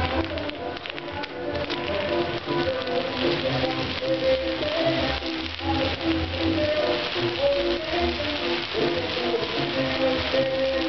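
A band playing a tune, with the steady crackle and sizzle of a castillo fireworks tower burning over the music.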